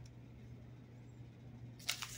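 Quiet room tone: a steady low hum with a short click just before the end.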